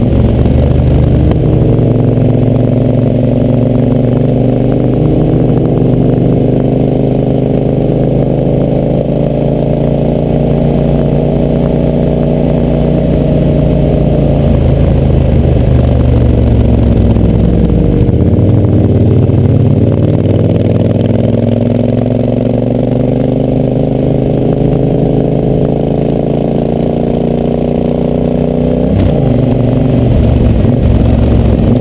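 Yamaha Super Ténéré 1200's parallel-twin engine running at speed, heard loud from the bike itself. Its note sinks in pitch around the middle of the stretch, then climbs again, with a sudden change in pitch near the end.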